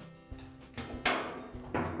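Sheet-metal washer cabinet being tipped forward off the machine, giving one sharp clunk about a second in, over faint background music.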